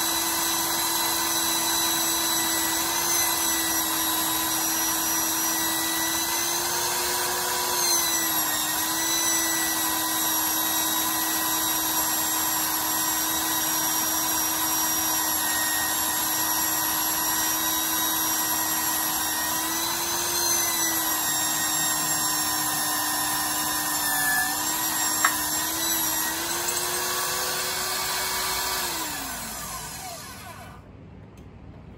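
Magnetic drill press motor running steadily while drilling a hole in steel angle iron, its pitch wavering slightly a few times as feed pressure changes, with one sharp click about 25 seconds in. Near the end the motor is switched off and winds down.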